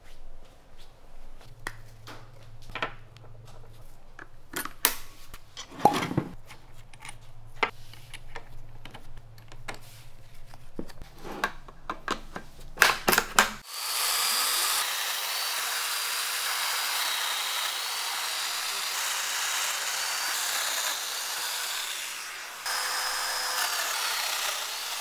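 Scattered clicks and knocks of handling, then, about halfway through, a Festool Domino DF 500 joiner starts and runs steadily with a high whine while milling mortises into chipboard panel edges. The sound dips briefly near the end and picks up again.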